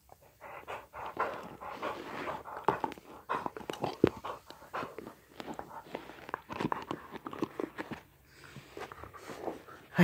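A dog close to the microphone making a busy run of short, irregular noisy sounds and clicks, with the sharpest click about four seconds in and a lull around eight seconds.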